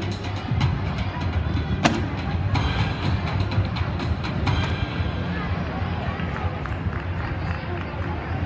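Busy gymnastics hall: background music playing over a mix of distant voices, with scattered light knocks and one sharp click about two seconds in.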